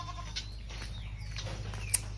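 Faint animal calls in the background over a steady low rumble, with one sharp click near the end.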